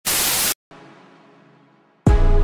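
TV static sound effect: a loud hiss for about half a second that cuts off abruptly, followed by a faint tail that fades out.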